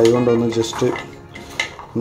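Hand mixing chopped onion, coriander leaves and soaked chickpeas in a plastic tub: rustling and light knocks of the ingredients against the container. A man's voice holds a drawn-out vowel for about half a second at the start.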